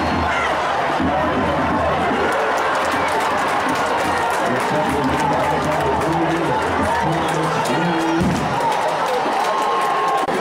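Football stadium crowd noise: a large crowd chattering and cheering steadily, with some music mixed in, held notes partway through.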